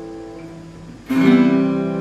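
Acoustic guitar: an open A minor chord rings and fades, then about a second in a fresh strum changes the chord, the move from A minor to C in an Am–C–G–Am progression.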